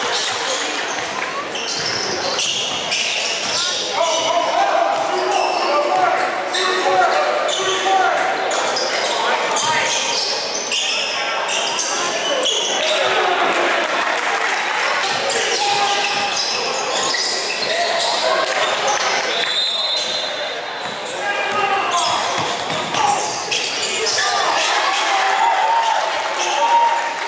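Live sound of a basketball game in a gym: a basketball bouncing on the hardwood court amid indistinct calls and shouts from players and spectators, echoing in the hall. A brief high squeal comes about three quarters of the way through.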